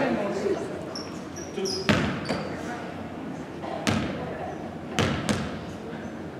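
Basketball bouncing on a hardwood gym floor, about five sharp, unevenly spaced bounces that ring in the large hall, with a few short sneaker squeaks in the first couple of seconds.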